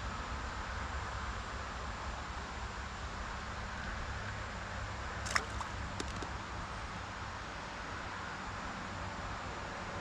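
Steady outdoor background noise, an even hiss over a low rumble, with one sharp click about five seconds in and a fainter one just after.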